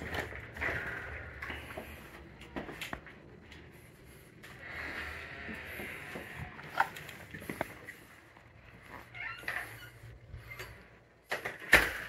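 A house door being opened and walked through, with scattered footsteps and knocks; a sharp knock near the end.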